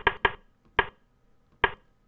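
Four short, sharp clicks at uneven intervals, made while stepping through moves on a computer chess board.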